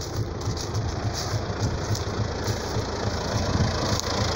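Tractor engine running steadily, a low, even drone while planting corn.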